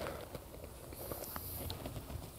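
Faint rustling and a few small clicks of a large paperback picture book being handled and a page turned, with a short paper hiss about a second in.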